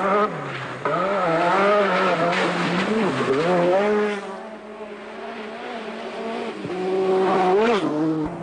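Renault 5 Turbo rally car's turbocharged four-cylinder engine driven hard, its pitch climbing and dropping again and again with throttle and gear changes. The engine fades in the middle and grows loud again near the end.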